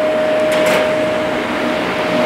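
Steady machine noise: a constant hum with one held pitched tone over an even hiss, with a brief rush of hiss about half a second in.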